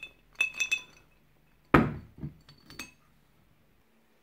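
Frozen bullaces dropping into a glass bottle and clinking against the glass: a quick run of ringing clinks about half a second in, one louder knock just before the middle, then a couple of lighter ones.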